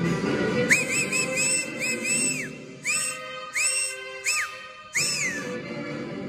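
Whistling in short arched notes that rise and fall: a quick run of about six, then four longer single ones. Underneath plays recorded marinera music, which drops out for about two seconds in the middle while the whistles go on.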